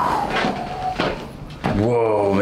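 A man's long drawn-out exclamation falling in pitch, with short cracks about a second in as his spine is adjusted in a chiropractor's seated lift, then a long "whoaaa, man" near the end.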